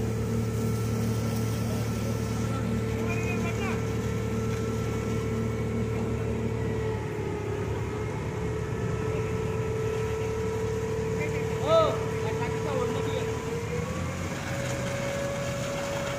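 Fire truck's engine running steadily to drive its water pump while a hose jet sprays water, its pitch rising slightly a couple of seconds before the end. A short voice call cuts in about twelve seconds in.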